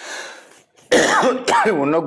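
A man clears his throat with a breathy, rasping rush of air, then about a second in breaks into loud voiced sound with swooping pitch, a laugh running into speech.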